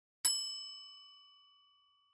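A single bell-like chime, struck once and ringing out with a clear high tone, fading away over about a second and a half.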